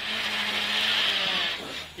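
Rally car's engine and road noise heard from inside the cockpit, a steady running note that dips briefly near the end.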